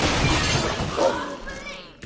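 A sudden loud crash of glass shattering that dies away over about a second and a half, sharp enough to wake a sleeper.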